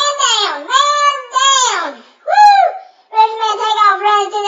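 A man wailing in a high falsetto voice: several drawn-out cries that swoop up and down in pitch, with a quicker, choppier run near the end.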